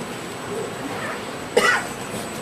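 A man's single short cough about one and a half seconds in, over a steady low room hiss.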